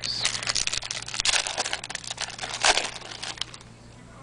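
Trading cards being handled and flipped through by hand: a quick run of paper rustles and clicks that dies down near the end.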